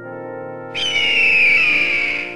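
Brass-style background music holding sustained notes; a little under a second in, a loud screech cuts across it, falling in pitch and fading over about two seconds, an eagle-cry sound effect.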